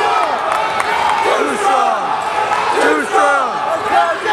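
Many voices shouting and calling out at once, a crowd of people yelling encouragement over each other in a large echoing gym.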